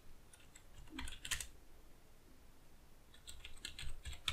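Faint computer keyboard typing: a few keystrokes about a second in, then a quicker run of keys near the end.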